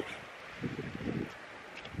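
Wind buffeting the microphone in low, uneven gusts, fairly faint.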